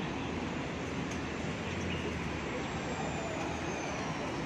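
Steady outdoor city background noise, a low even traffic-like hum, with a faint high whine slowly falling in pitch in the second half.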